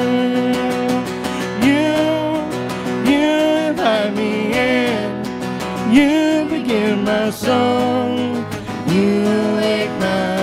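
Worship band playing a song live: voices singing the melody line by line over strummed acoustic guitars and keyboard.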